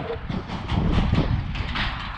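Steady low rumble of wind buffeting the microphone of a helmet-mounted action camera, with a few faint knocks.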